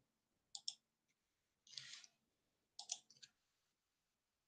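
Near silence broken by a few faint computer mouse clicks. Two quick pairs come about half a second in and near three seconds in, with a soft brush of noise between them.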